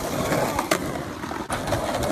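Skateboard wheels rolling over rough asphalt, a steady rolling noise, with one short sharp click about two-thirds of a second in.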